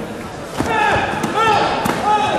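Taekwondo sparring: a few sharp thuds of kicks and bodies hitting, with short pitched shouts over them in the second half.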